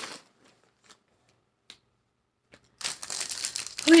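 Plastic packaging crinkling as it is handled, beginning about three seconds in after a few faint clicks.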